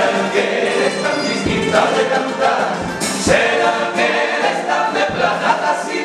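A male carnival comparsa chorus singing a pasodoble in several voices, with strummed Spanish guitar accompaniment.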